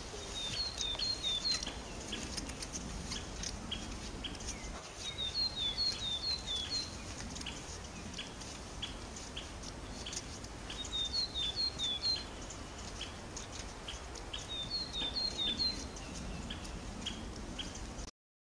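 A songbird singing four short phrases of quick, high, falling chirps, spaced a few seconds apart. Under them runs a light, irregular patter of crunching steps in snow.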